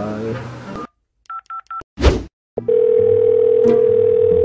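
Mobile phone keypad beeping three times in quick succession as a number is dialled, then a brief loud burst, then a steady phone tone as the call goes through.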